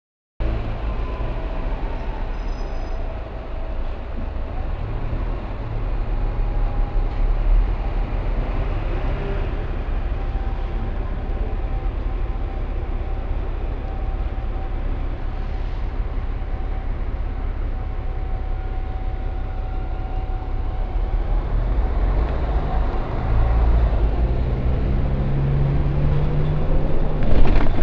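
Inside a London double-decker bus: its diesel engine running with a steady low rumble and a faint whine, the low rumble growing louder over the last few seconds.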